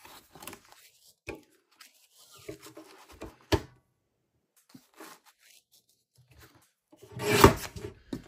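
Paper sheets rustling and sliding on the base of a paper trimmer as they are lined up for a cut, with one sharp click about three and a half seconds in.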